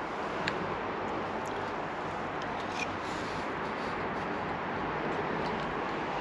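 Steady background noise with a few faint, short clicks.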